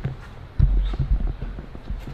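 Irregular low thumps and light knocks starting about half a second in, typical of footsteps and handling noise from a handheld camera being moved around.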